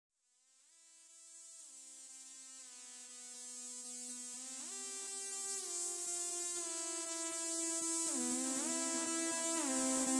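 Song intro on a synthesizer: held notes that glide smoothly from one pitch to the next, fading in from silence and growing steadily louder.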